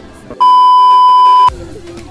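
A loud, steady electronic beep tone lasting about a second, starting about half a second in and cutting off sharply, with a faint music bed underneath.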